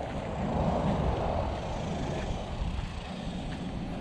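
Steady low rumbling noise with no distinct events.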